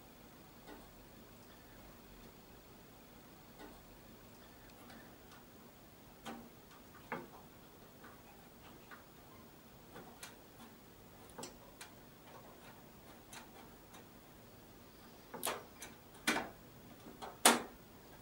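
Scattered light clicks and knocks of a sound card being handled and pushed into an expansion slot in an open desktop computer case, with a few sharper clicks near the end.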